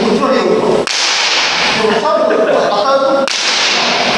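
Kendo practice: two sharp cracks of bamboo shinai strikes, about a second in and again near the end, each followed by a long shouted kiai.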